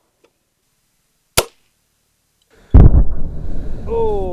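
A GAT spring-air toy gun firing a cork: a single sharp pop about a second and a half in. A loud low rumbling noise sets in abruptly near the end.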